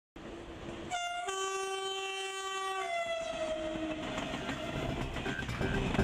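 TGV high-speed train sounding its horn in one long blast of about three seconds, a single note that becomes a two-note chord and then sags in pitch as it fades, over the steady noise of the train on the rails.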